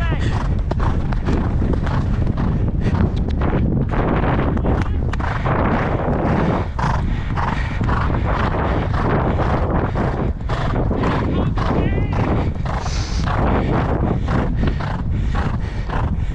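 Hoofbeats of a ridden horse moving at pace over a sand track, a quick, continuous run of hoof strikes.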